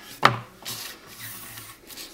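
A sharp tap as the card album cover is set down on the cutting mat, followed by a hand rubbing over paper to smooth it flat.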